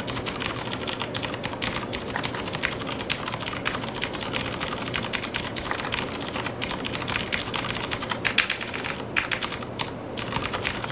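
Fast, continuous typing on a Das Keyboard Model S Professional mechanical keyboard, its key switches giving a tactile click, with a couple of brief pauses in the later part.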